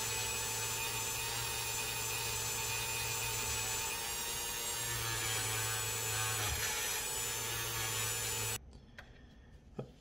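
Dremel rotary tool running steadily with a felt polishing bob pressed against a small cast-metal model part, a steady motor whine with a rubbing hiss, polishing the metal toward a chrome-like shine. It stops about eight and a half seconds in.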